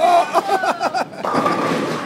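Bowling ball rolling down a wooden lane, a steady rolling noise through the second half. It is preceded by sharp clatters and voices of the bowling alley.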